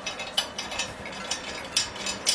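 Irregular metallic clicks and scrapes, roughly two a second, as the brass wing-nut filler cap is turned onto the threaded filler neck of a vintage gasoline blowtorch's steel tank.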